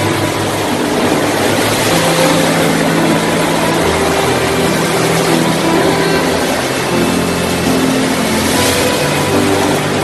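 Hurricane wind and rushing water as a steady, loud hiss on a phone's microphone, with slow held background-music notes that change pitch every second or two underneath.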